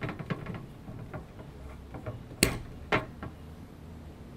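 A glass beer bottle being opened by hand: small clicks and scrapes at the cap in the first second, then a sharp pop about two and a half seconds in and a smaller click half a second later.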